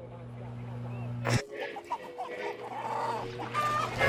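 A low steady hum that cuts off with a click about a second and a half in, followed by domestic chickens clucking in short, irregular calls.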